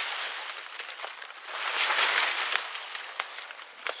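Brush and leaves rustling as branches are pushed aside by hand, swelling to its loudest about two seconds in, with small twig crackles throughout.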